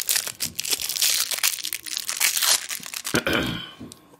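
Clear plastic wrapping crinkling and tearing as it is peeled off a new tube mod by hand, dense and continuous, dying away about three and a half seconds in.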